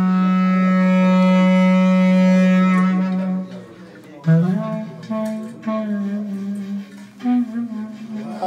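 Clarinet holding one long low note that fades out about three and a half seconds in, then starting a new phrase of low notes about a second later.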